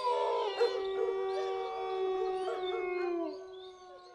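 Cartoon dogs howling: several long howls held together at steady pitches, the lowest one sliding down and the sound fading a little after three seconds in.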